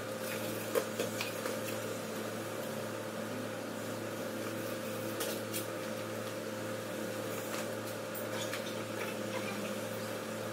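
Steady mechanical hum, like a fan or similar running machine, with a few faint clicks and taps; the sharpest comes just under a second in.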